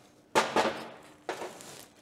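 A sharp metallic clack about a third of a second in that trails off into a scraping rattle, then a lighter knock just past a second: a tool and hands working a Volkswagen spring C-clip onto an exhaust pipe joint clamped in a vise.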